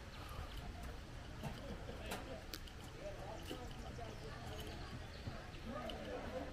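Quiet outdoor ambience: faint distant voices, a few scattered light knocks or taps at irregular intervals, and a low background rumble.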